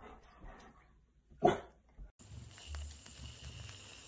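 A golden retriever gives one short bark about a second and a half in.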